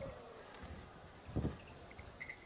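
Quiet indoor arena ambience during a badminton rally, with one dull thump about one and a half seconds in.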